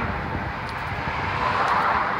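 Street traffic noise: a steady rumble of passing vehicles that grows louder toward the end.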